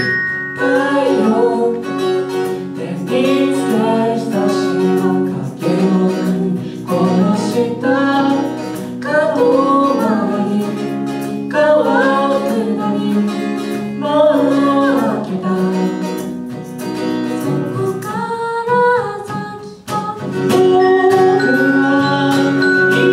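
Live acoustic pop song: a sung melody over strummed acoustic guitar and held keyboard chords.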